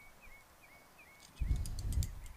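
A small bird chirping faintly in the background, short falling-then-level chirps about three a second, followed near the end by a louder low muffled rumble.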